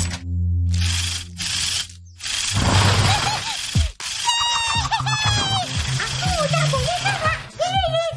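Cartoon soundtrack: background music with a few short whooshing noise effects in the first half. From about four seconds in, several high-pitched cartoon voices cheer "Hore!"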